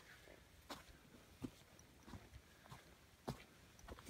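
Faint footsteps of a hiker walking on a damp dirt trail, a soft thud about every three quarters of a second.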